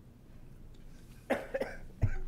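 A person coughing: two short coughs close together about a second and a half in, after a stretch of quiet room tone.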